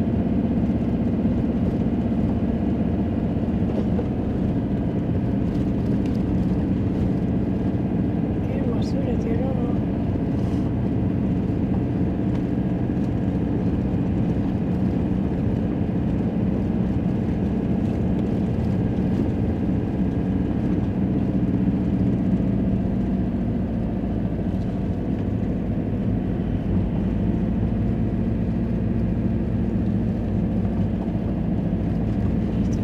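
Car interior noise while driving: a steady low hum of engine and tyres on the road, heard from inside the cabin.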